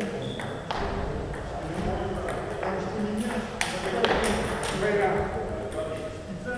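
Celluloid-type table tennis balls clicking sharply off tables and rackets in a reverberant hall, a handful of separate ticks with the loudest in the middle.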